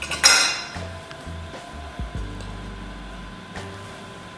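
Dishes clinking: a sharp, ringing clink of a plate being handled on the counter about a quarter second in, then a single quieter clink of a utensil about two seconds in.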